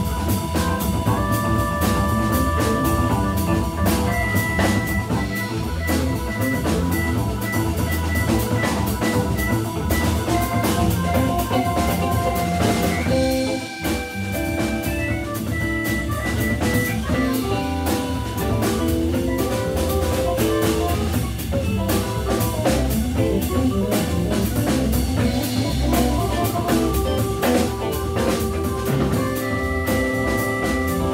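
Organ trio playing jazz-funk: Hammond B3 organ through a Leslie speaker, electric guitar and drum kit, with held organ chords over the groove. The band stops briefly about halfway through, then carries on.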